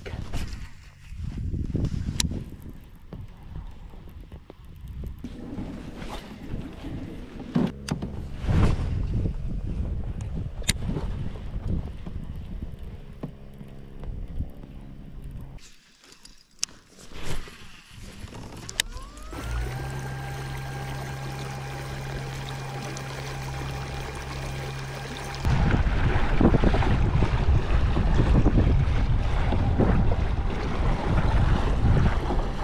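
A fishing rod being cast and a reel worked, with a few sharp clicks, for the first half. Later a kayak's electric motor (Newport NK180) spins up with a rising whine and runs at a steady pitch, then rushing water and wind take over as the kayak moves along.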